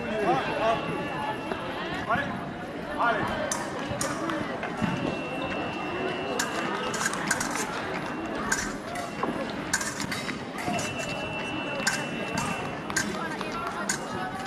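Steady chatter of many voices echoing in a sports hall during épée fencing, with sharp metallic clicks of blades and feet on the piste. A steady high electronic beep from a fencing scoring machine sounds twice, each one lasting a couple of seconds, about five and eleven seconds in.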